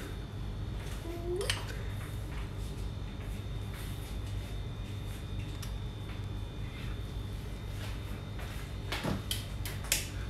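Kitchen food-prep handling over a steady low hum: faint scraping and tapping of a knife and bread on a wooden board, with a brief squeak early on. Two sharp clacks near the end as the black electric sandwich maker is handled.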